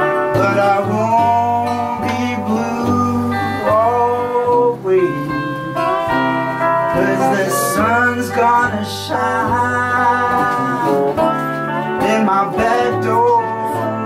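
Live music: electric and acoustic guitars playing a blues-flavoured song, with a voice singing and notes bending in pitch.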